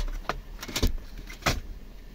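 Hands working the gear-lever boot and plastic centre-console trim of a pickup's cabin: a few short, sharp clicks and knocks, about three in two seconds.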